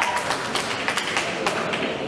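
Scattered audience clapping after a boxer is introduced: separate hand claps at an irregular pace, thinning out near the end.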